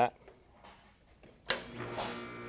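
Heat pump outdoor unit starting once the defrost board's time delay is bypassed: a sharp click, the contactor pulling in, about one and a half seconds in, then the compressor settles into a steady hum, running in heat mode.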